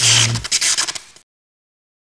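Short sound effect for an animated logo intro: a bright, crackling hiss with a low hum under its first half second. It fades and cuts off about a second in, leaving dead silence.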